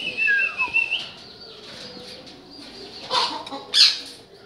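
Caged parrot, a sun conure: a held whistle and a falling whistled note in the first second, then two short, loud, harsh screeches near the end.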